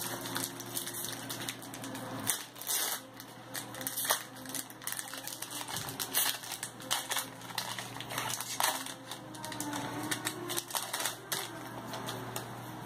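Trading cards being handled and flipped through by hand: a run of irregular quick clicks and rustles of card stock sliding and snapping against card stock.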